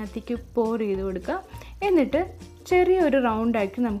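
A voice over background music, with some long held notes that glide up and down.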